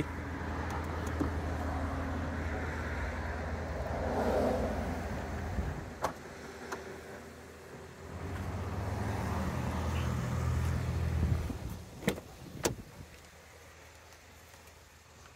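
Low rumble of a car, heard twice for several seconds with a swell in the middle of the first stretch, then two sharp clicks near the end as a car door is unlatched and opened.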